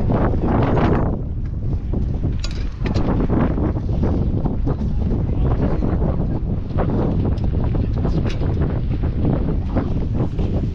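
Wind buffeting the microphone, a loud rumbling roar that surges and eases throughout, with a few faint clicks.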